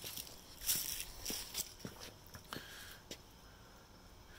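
Footsteps of a person walking backward over ground strewn with dry leaves: about five steps, a little over half a second apart, growing fainter near the end.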